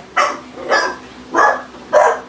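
A dog barking four times in a steady run, about one bark every half-second.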